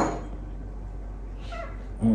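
Baby monkey giving a brief, high, squeaky call about one and a half seconds in, after a short sharp sound right at the start.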